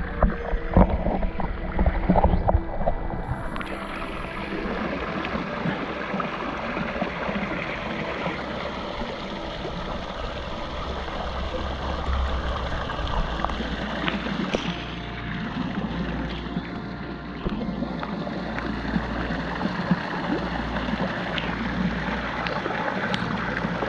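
Small garden waterfall spilling into a pond: a steady rushing splash, heard with the camera at the water's surface. In the first few seconds, water sloshes and knocks against the camera.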